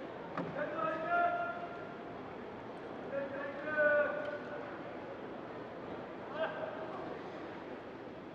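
A voice calling out three times in a large indoor hall, each call short and held on one pitch, over the steady hum of the arena.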